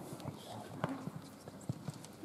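Scattered light taps and shuffles of feet on a wooden sports-hall floor, with faint voices in the background.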